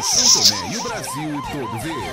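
Emergency-vehicle siren sounding a fast yelp, its pitch swooping up and down about four times a second, with a brief hiss at the start.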